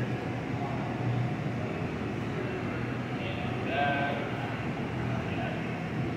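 Steady hum and roar of glassblowing studio equipment, the furnace and glory hole burners and exhaust fans, with faint voices in the room.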